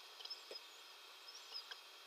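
Near silence: faint room tone with a couple of tiny, brief ticks.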